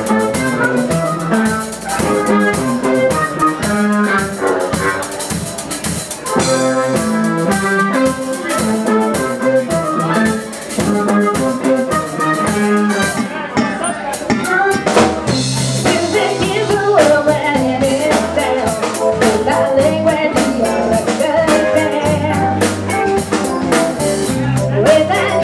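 Live band playing amplified music with electric guitar and a drum kit keeping a steady beat. The bass end grows fuller about two-thirds of the way through.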